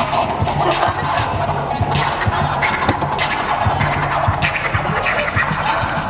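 Music with a steady beat and a repeating bass line.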